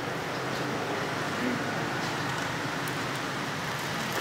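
Steady background noise of a busy street-food stall, with faint voices far off.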